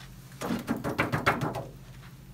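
Plastic craft-machine cutting mat being knocked and tapped to shake off loose glitter that has not stuck to the glue lines. A quick run of about ten sharp taps starts about half a second in and stops after a second or so.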